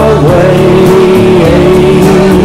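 Country-pop band recording in an instrumental break: a held lead melody that bends in pitch, over bass and drums.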